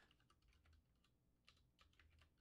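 Faint typing on a computer keyboard: an uneven run of soft keystrokes.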